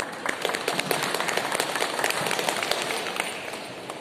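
Audience applauding: a round of many irregular hand claps that dies away a little after three seconds in.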